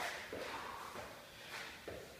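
Soft scuffs and light thuds of shoes on a rubber floor mat during Spiderman climbs, with short breaths from a man working hard, several times.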